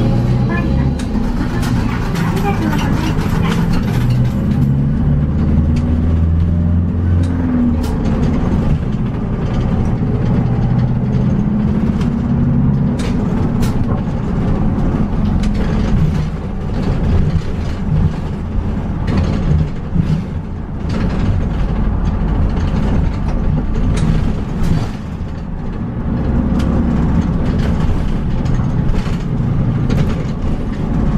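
City bus engine heard from inside the cabin near the front, pulling away with its pitch rising over the first few seconds, then running steadily as the bus drives along, with scattered clicks and rattles from the body.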